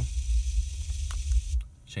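FM radio static from a car stereo: a steady hiss with a low rumble underneath and a single click about a second in, from a Pioneer head unit tuned to an FM frequency that has no station.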